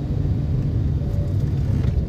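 Steady low rumble of a car's engine and road noise heard inside the cabin of a moving car.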